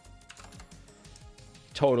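Computer keyboard typing: a run of key clicks lasting about a second, over synthwave background music.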